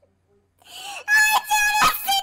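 A man's high-pitched wailing laugh: after a moment of silence it swells up about half a second in and becomes a long, held falsetto note that breaks off near the end.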